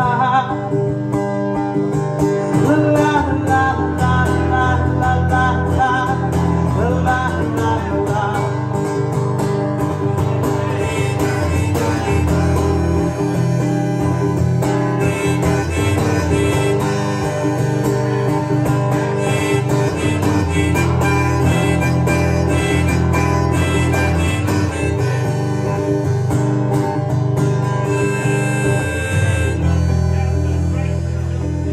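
Steel-string acoustic guitar strummed steadily as the accompaniment. A harmonica, played from a neck holder, carries the melody over it after a brief sung line at the start.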